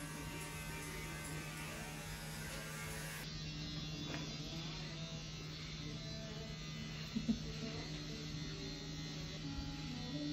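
A steady low electric buzz, with soft plucked-guitar background music coming in a few seconds in.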